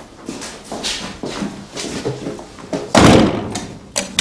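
A cell door slamming shut about three seconds in: a sudden heavy thud that is the loudest sound here, dying away over about half a second. Quieter scattered knocks come before it.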